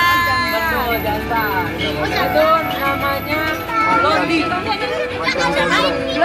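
A woman's loud, high call falling in pitch over about a second, then several people's voices talking and calling over one another.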